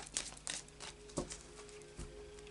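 A deck of tarot cards being shuffled by hand: a few quick papery flicks of cards slipping off the pack in the first half-second, then a soft knock about a second in as the deck is handled.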